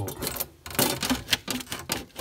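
A loose consumer unit (fuse board) rattling and knocking against the wall as it is pushed and wiggled by hand: a quick run of clicks and knocks with a short pause about half a second in. The board is not fixed to anything and is held on only by paper.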